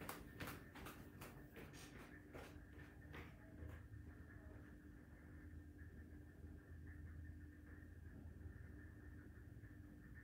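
Near silence: room tone with a steady low hum, and a few faint clicks in the first few seconds.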